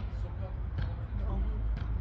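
Quiet, murmured speech over a steady low rumble.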